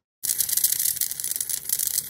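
High-voltage corona discharge at the candle-experiment electrodes, fed by a flyback transformer: a steady high-pitched crackling hiss that starts about a quarter second in as the high voltage is switched on. The discharge is what drives the ionic wind past the flame.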